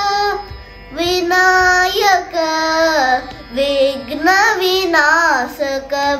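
A boy singing a Carnatic song in raga Nata, holding long notes that slide and bend between pitches in ornamented turns, with a brief break about half a second in.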